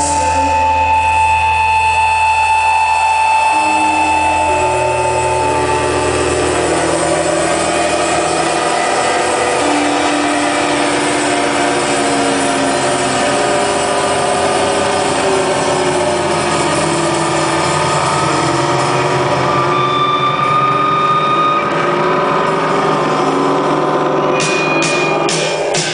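Live rock band in an instrumental breakdown with no vocals or drums: distorted electric guitars holding droning, sustained tones, with pitches that slide and waver. A deep bass drone under it fades out about five seconds in.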